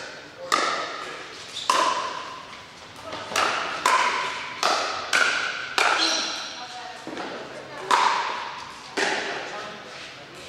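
Pickleball paddles hitting a plastic pickleball back and forth in a rally: a sharp, ringing pock roughly every half second to second, with a pause of about two seconds near the end, echoing in a large hall.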